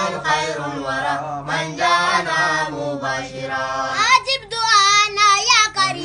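Unaccompanied group chanting of an Arabic qasida in praise of the Prophet Muhammad by young voices; about four seconds in, one voice carries a long wavering, ornamented line on its own.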